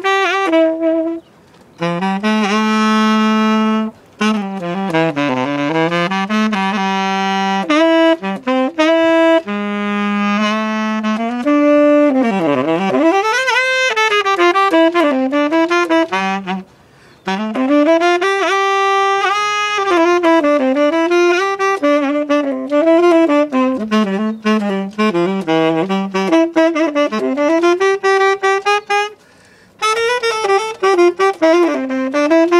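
Unaccompanied tenor saxophone improvising a jazz solo: melodic phrases split by short breaths, with one deep swooping bend down and back up about twelve seconds in.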